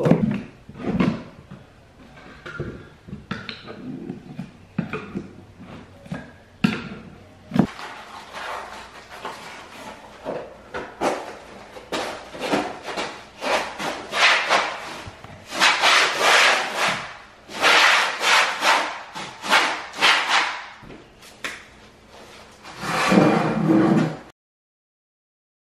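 A metal scraper working gummy flooring adhesive off a chipboard subfloor in scattered short scrapes. About eight seconds in, a long run of louder, quicker scraping strokes begins, roughly one or two a second.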